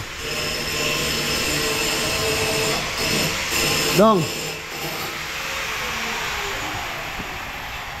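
Portable air compressor running steadily to supply a spray gun for priming steel grills, with a man's brief shout about four seconds in.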